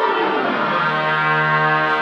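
Concert band playing a closing bar: the woodwinds finish a descending run of quick notes that speeds up as it falls, and the full band, low brass included, lands on a loud held chord.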